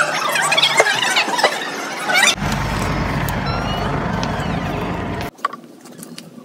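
High-pitched voices squealing and chattering in a busy room, followed about two seconds in by an abrupt change to a steady low rumble that cuts off suddenly near the end.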